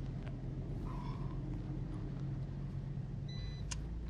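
Steady low hum of a BMW car's cabin on the move, with a short sharp click near the end.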